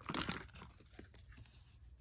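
Handling noise from plastic toiletry bottles and packaging: a short crinkling rustle just after the start, then faint light clicks and taps as items are moved.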